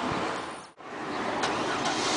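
Steady outdoor traffic noise with a hum of passing vehicles; it drops out to a brief silent gap just under a second in, then resumes.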